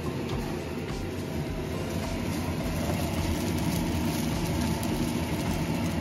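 Fried rice being stir-fried in a frying pan: a steady sizzle with the scrape and tap of a wooden spatula against the pan, over the steady hum of a kitchen range hood fan.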